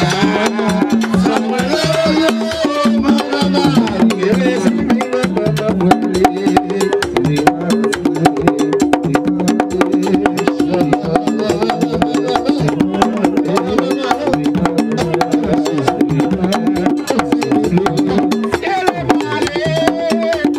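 Haitian Vodou ceremonial music: a fast, steady rhythm of hand drums and other percussion with singing voices over it.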